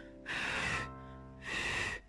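Two short breathy huffs, each about half a second, into the microphone of a Retevis RT3S handheld radio to test its voice-activated transmit; the radio's VOX does not key up. Soft piano background music plays underneath.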